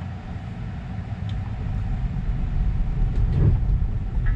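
Tyre and road rumble inside the cabin of a Tesla Model 3 electric car pulling away from a stop on a rough street. The rumble grows louder as it gathers speed, with a low thump about three and a half seconds in.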